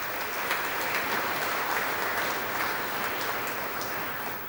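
Audience applauding steadily as a graduate is presented.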